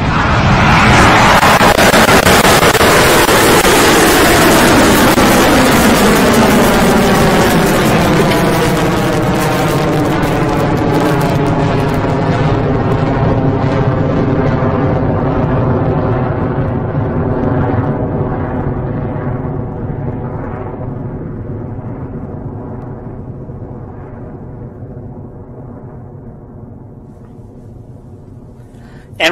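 Rocket Lab Electron's first stage, driven by nine Rutherford engines, at full thrust just after liftoff. A loud, rough roar peaks in the first few seconds, then fades steadily as the rocket climbs away, with a whooshing sweep that falls in pitch.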